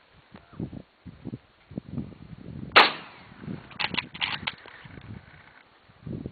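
A single rifle shot about three seconds in. About a second later comes a quick cluster of sharp metallic clacks, then a faint ringing tone that dies away.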